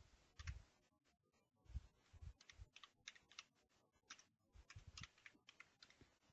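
Faint keystrokes on a computer keyboard: an irregular run of quick taps as a short name is typed.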